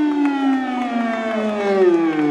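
A male football commentator's excited, drawn-out call: one long held vowel whose pitch slides slowly downward.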